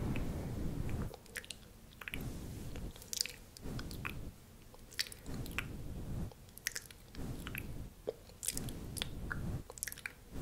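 Close-miked mouth sounds like chewing: soft wet bursts about a second long, repeated, with sharp little clicks and smacks between them.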